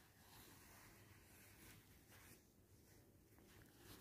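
Near silence, with faint rustling of cotton thread and fabric being worked with a steel crochet hook.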